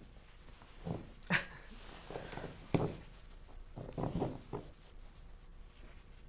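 A handful of short, soft sounds spread over a few seconds: small voice-like noises and scuffs from a woman wobbling as she tries to keep her balance standing on a foam balance pad.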